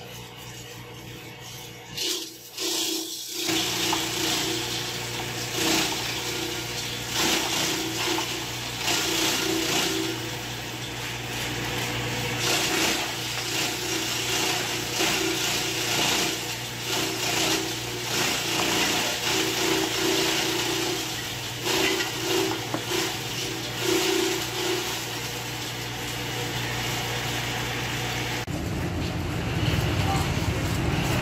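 TAKYO TK3000 electric feed chopper running with a steady motor hum, its slicing and chopping blades shredding green plant stalks in irregular loud surges as they are fed into the hopper. The hum stops near the end.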